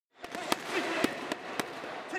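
Boxing gloves striking focus mitts in pad work: about five sharp smacks in quick, uneven succession.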